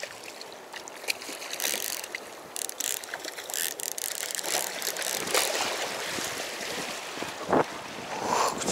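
Spinning reel being cranked by hand to wind in line with a small hooked fish, its gears clicking and whirring, over water washing against the shore rocks.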